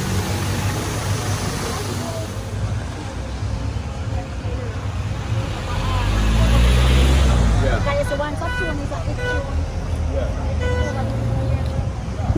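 Street traffic: a steady rumble of passing vehicles, with one going by louder about halfway through.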